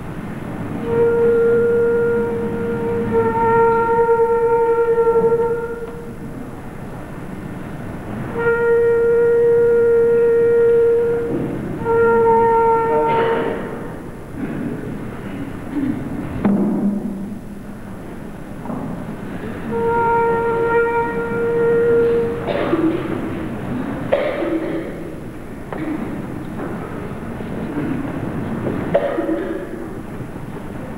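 Amateur wind band playing a slow arrangement of traditional Christmas melodies in a church: long held notes in phrases of a few seconds each, separated by short breaths.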